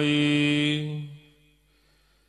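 A man's voice chanting Gurbani in the Hukamnama recitation, holding the last syllable of a line ("bhai") on one steady note for about a second. It then fades out, leaving a pause of near silence before the next line.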